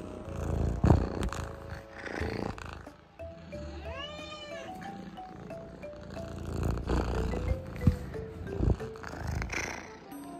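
A Munchkin kitten meows once about four seconds in, a single call that rises and falls in pitch, over light background music. Close rubbing and bumping noises come from the kitten pressing its face and fur against the phone's microphone.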